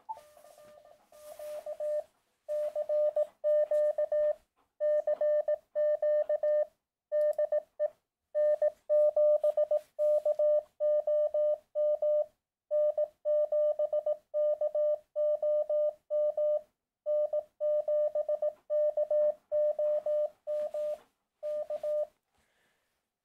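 Morse code sidetone from an Elecraft KX2 transceiver's memory keyer: a single steady mid-pitched tone keyed in dots and dashes, starting about two and a half seconds in. It sends the general call "CQ CQ CQ DE N7KOM N7KOM N7KOM K", three CQs followed by the call sign three times.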